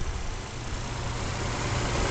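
2006 GMC Envoy's 4.2-litre inline-six engine idling steadily, heard close up in the open engine bay. It runs very smooth.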